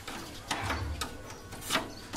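Hand tool clicking and scraping against the metal fittings of a steel formwork mould, with three sharp clicks, the loudest near the end.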